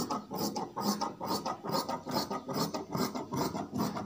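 Large tailor's shears cutting through cloth laid on a wooden table: a steady run of snips, about three a second.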